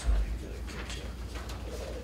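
A dull, deep thump on the desk microphone right at the start, then quiet room hum with faint rustles of paper.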